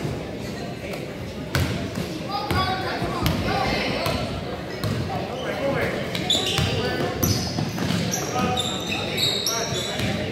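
Basketball bouncing on a hardwood gym floor with repeated dribbles, and sneakers squeaking on the court in the second half, under players' and spectators' voices in a large gym.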